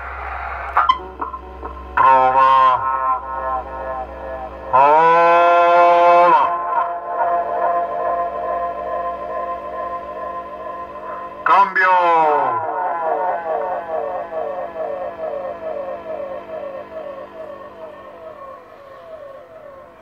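A voice coming over a CB radio speaker with heavy electronic echo: three short drawn-out calls, each trailed by a long run of repeats that slowly fade away. The echo is the effect fitted to the modified Midland 77-102.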